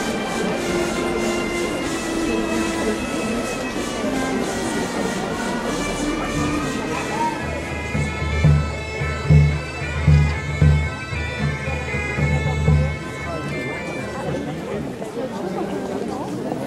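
Wind-instrument music with steady, held drone tones, heard over crowd chatter. About halfway through, a run of uneven low thumps comes in for several seconds and then stops.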